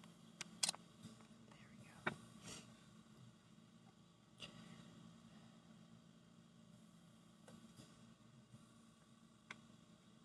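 Near silence: quiet room tone with a handful of soft clicks and taps, the loudest a quick cluster about half a second in and another about two seconds in.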